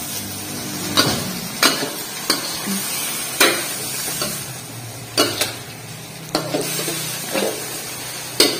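Stir-frying water spinach in a wok: a steady sizzle of frying, broken about once a second by sharp clacks of a metal spatula scraping and knocking against the wok.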